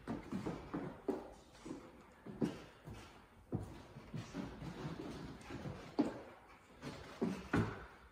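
Feet thudding and stepping on a wooden gym floor during lunges: irregular short thumps, about one a second.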